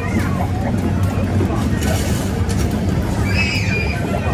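Noisy arcade game machine in play: a steady low rumble with loose plastic balls moving about, under game music and background chatter.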